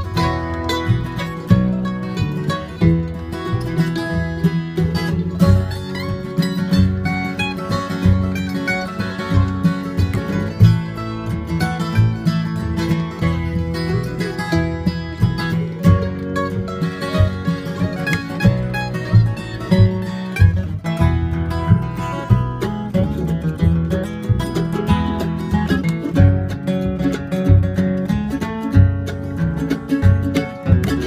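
Instrumental break of acoustic bluegrass/country music: strummed and picked acoustic guitar, plucked upright bass keeping a steady beat, and a mandolin, with no singing.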